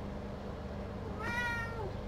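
A single short, high-pitched animal cry with a slightly falling pitch, starting a little past a second in, over a steady low room hum.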